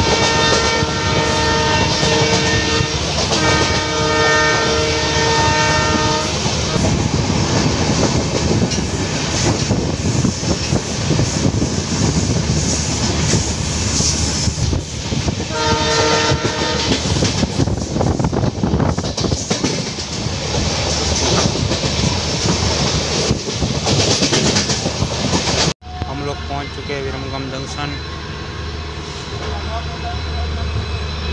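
A passenger train running at speed, heard from an open coach doorway: wheels clattering on the rails with rushing wind. The locomotive horn sounds two long blasts in the first six seconds and a shorter one about sixteen seconds in. Near the end the sound cuts off for an instant and comes back quieter.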